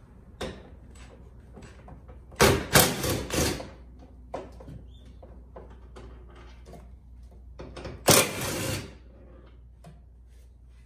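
Cordless DeWalt drill/driver running in two short bursts, backing fasteners out of a car door: a stuttering burst about two and a half seconds in and a shorter one about eight seconds in, with small clicks of handling between.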